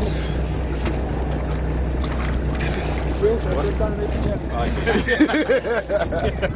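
Support boat's engine running steadily as a low hum, with wind and water noise; voices and laughter come in over the second half.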